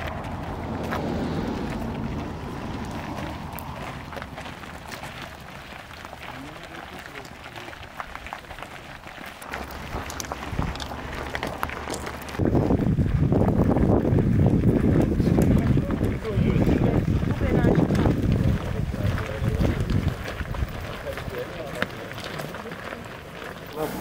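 Footsteps of a group walking on a gravel road, with indistinct voices among the walkers. The sound jumps abruptly louder about halfway through.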